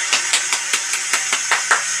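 One person clapping hands rapidly and steadily, about five claps a second.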